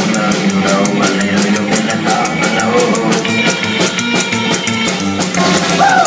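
Rockabilly band playing live: a drum kit keeps a quick, steady beat under guitar, with a sliding pitch near the end.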